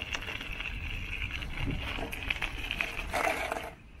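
Bicycle tyres rolling and crunching over a gravel path, a steady hiss with scattered small clicks, going quiet as the bike comes to a stop just before the end.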